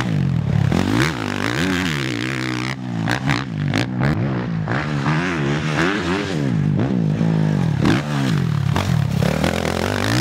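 Suzuki RM-Z450 four-stroke motocross bike being ridden hard, its engine revving up and backing off again and again, the pitch rising and falling about once a second.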